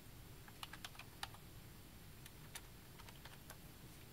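Typing on a computer keyboard: a short, irregular run of faint key clicks as a filename is typed into a save dialog.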